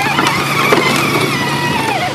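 Battery-powered ride-on toy Jeep's electric drive motors whining steadily as it drives, the whine falling in pitch and cutting out just before the end.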